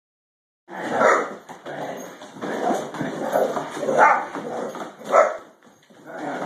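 A young Great Dane barking repeatedly during rough play, the loudest barks coming about a second in, about four seconds in and just after five seconds.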